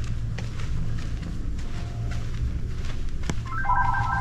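A single click, then about three and a half seconds in a steady electronic ringing tone of several stacked pitches starts, over a low steady background rumble.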